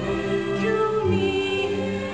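Live stage-musical singing with accompaniment, the voices holding long notes that change pitch every half second or so.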